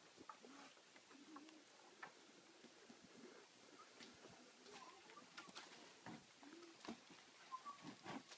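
Near silence: faint outdoor ambience with a few soft, low, short calls and scattered light clicks.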